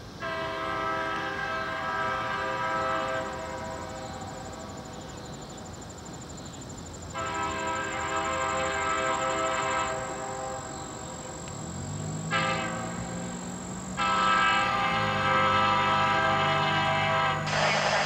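Horn of an approaching BNSF GP38-2 diesel locomotive sounding the grade-crossing signal: two long blasts, one short, then a final long one. Under the last two blasts the low rumble of the locomotive's EMD diesel grows louder as it nears.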